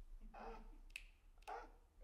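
Near silence: faint, breathy chuckles and two soft clicks about a second in.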